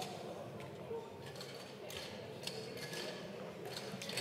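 Low murmur of voices and movement in a large parliamentary chamber, with a few faint clicks.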